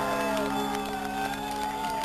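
A rock band's last electric guitar chord ringing out through the amplifiers while the audience cheers, claps and whistles in high gliding tones.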